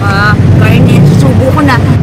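Short indistinct vocal sounds, one rising in pitch near the end, over a loud steady low hum.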